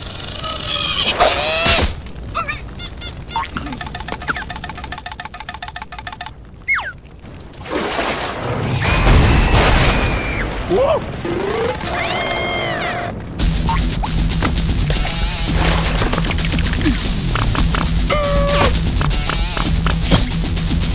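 Cartoon soundtrack of music and sound effects, with short squeaky cries from the bug characters. About eight seconds in, a loud burst of noise as the fire flares up, then from about halfway on a steady low rumble of burning flames.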